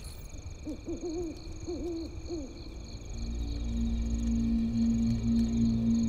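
An owl hooting, a few short calls in the first half, over a faint steady high chirping. A low sustained music drone comes in about halfway through and swells.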